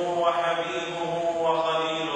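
A man's voice intoning Arabic in a chanted, recitation-like style, holding long level notes.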